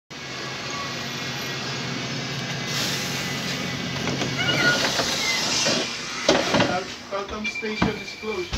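A London single-deck bus idling at a stand, a steady low hum, with a long hiss building about a third of the way in. Near the end come footsteps and knocks as someone steps aboard, and a voice.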